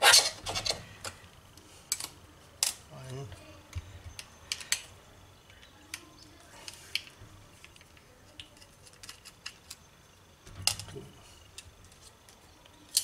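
Small metal clicks and light rattles of a laptop hard-disk caddy and its tiny screws being handled as the screws are taken out with a screwdriver. The clicks come irregularly, the loudest right at the start.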